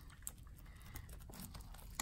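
Faint crinkling and light ticks of nitrile-gloved hands pressing and smoothing resin-wetted carbon fiber cloth into a mold while unrolling it.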